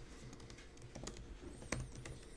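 Computer keyboard being typed on: a few faint, scattered key clicks.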